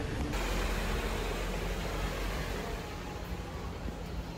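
Steady city street noise: a continuous hiss with a low traffic rumble, easing slightly toward the end.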